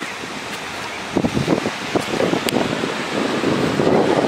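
Wind blowing over the microphone outdoors: a steady rush that turns into stronger, uneven gusts about a second in.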